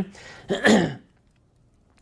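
A man clears his throat with one short cough about half a second in.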